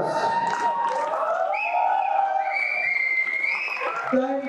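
Audience cheering and shouting in a hall, with several drawn-out high calls in the second half.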